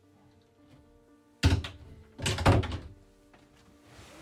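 Two thuds of a wooden cabin door being shut, the first about a second and a half in and a second, longer one just under a second later, over soft background music.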